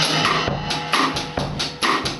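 A drum kit being played live: a steady beat of kick drum and cymbal strokes.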